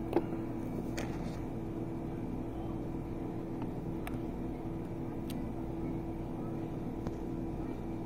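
A few light clicks and taps as a plastic test tube is picked up and handled, the sharpest just after the start. Underneath runs a steady room hum with a held tone from an appliance.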